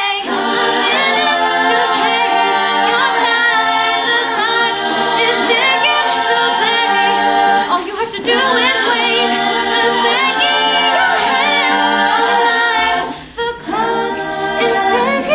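All-female a cappella group singing, a lead voice over layered backing harmonies with mouth-made vocal percussion. The sound thins briefly about 8 s in and again near the end.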